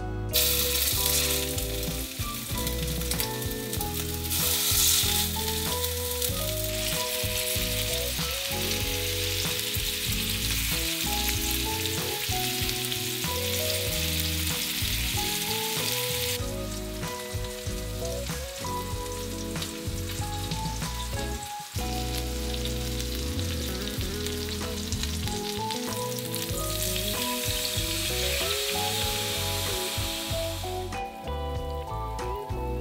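Minced-meat patties sizzling in hot oil in a stainless steel frying pan, starting as the first patty goes in. The sizzling stops about halfway through and comes back near the end as a liquid is poured into the pan. Soft background music plays throughout.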